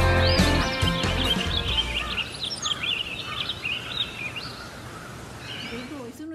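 Background music fading out over the first two seconds, with small birds chirping repeatedly in the garden.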